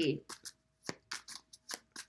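Tarot cards being shuffled by hand: a series of short, irregular flicks and clicks as the cards slap against each other.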